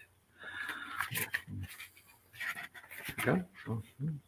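Quiet rustling of paper as the pages of a book are handled and turned, with a few brief, low voice sounds.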